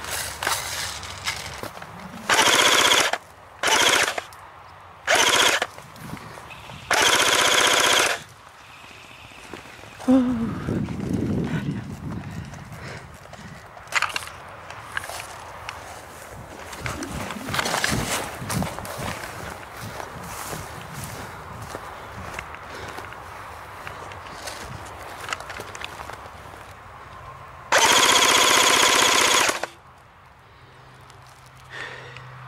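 Airsoft electric rifle firing full-auto bursts, each a buzzing rattle: four short bursts in the first eight seconds, then one longer burst of about two seconds near the end.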